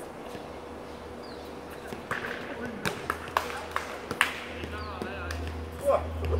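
A basketball bouncing on a hard outdoor court: sharp, irregularly spaced thuds starting about two seconds in, with players' voices mixed in.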